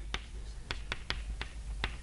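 Chalk tapping and scraping on a blackboard as points are marked on a diagram: about seven short, sharp taps over two seconds.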